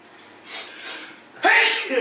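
A person sneezing: a couple of short breathy intakes, then one sudden loud sneeze about one and a half seconds in.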